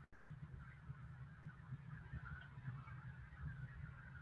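Faint steady low hum and background noise from an open microphone on a video call, cutting out for an instant at the start.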